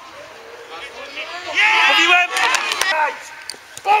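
Shouting voices on a football pitch: a loud, high-pitched shout starting about a second and a half in, with other calls overlapping, then a few short sharp knocks near the end.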